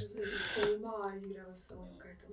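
Only speech: a voice trails off quietly and fades toward silence.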